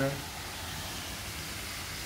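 The last word of speech trails off, then a steady, even background hiss with no distinct events.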